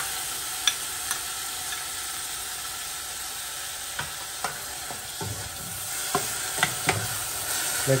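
Chopped tomatoes sizzling steadily in butter with onion and ginger-garlic in a stainless steel saucepan. A metal spoon clinks against the pan as they are stirred in, a couple of times early and several times in the second half.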